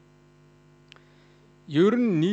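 Faint, steady electrical mains hum through the sound system during a pause in speech, with one small click about halfway through. A man's voice starts speaking near the end.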